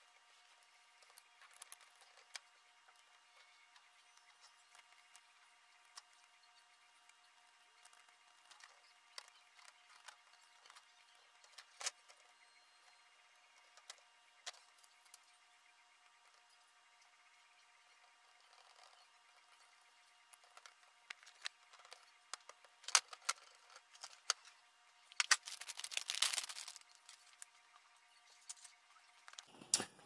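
Faint, scattered clicks and light rustling of plastic parts and wiring being handled and fitted together on a 3D printer's hot-end carriage, growing busier in the last third with a longer scuffing rustle.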